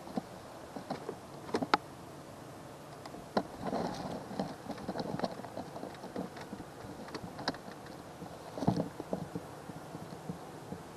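Scattered light clicks and knocks from handling gear in a small boat, irregular and unrhythmic, with a busier patch of knocks in the middle and a sharper knock near the end.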